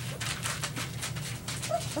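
Three-week-old border collie puppies moving about, their claws scratching and scuffling on paper and towels in quick, irregular strokes.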